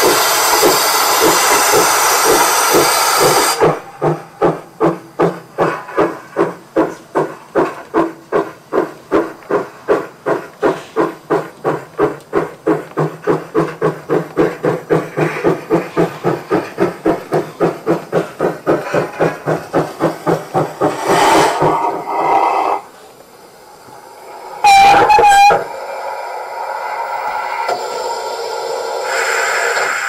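Sound decoder of a brass 1:32 gauge 1 model of a class 59 (Württemberg K) steam locomotive, playing through the model's speaker; the sound set is borrowed from another KM1 locomotive rather than a true class 59 sound. A loud hiss of steam for the first few seconds gives way to steady exhaust chuffs at about two to three a second, which stop about 23 seconds in. A short whistle blast follows, then a rising hiss of steam.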